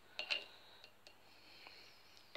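Faint clicks and taps of small objects being handled on a desk, a short cluster in the first half second and a few single ticks after.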